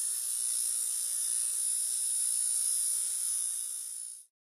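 Steady, high-pitched electronic hiss with a faint low hum beneath it, a synthesized intro sound effect that eases off slightly near the end.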